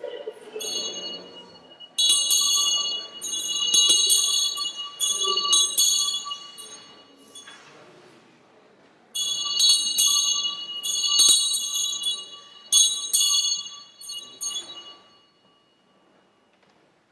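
Small bells shaken in two bursts, the first about two seconds in and the second about nine seconds in, each a quick run of bright, high strikes that rings on for several seconds before dying away.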